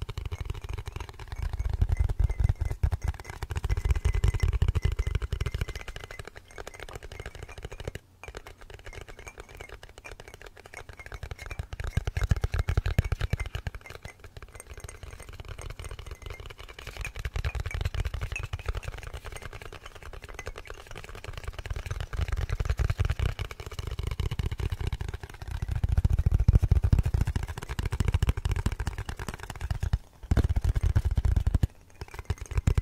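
Rapid, continuous fingertip and fingernail tapping on a small glass container, layered into a dense patter. Low rumbles swell and fade every few seconds under the tapping.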